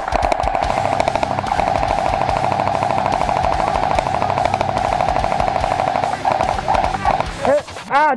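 Airsoft M249 SAW-style light machine gun firing one long continuous full-auto burst, a fast stream of sharp cracks over the whir of its gearbox, for about six seconds before breaking into shorter bursts. A shout comes right at the end.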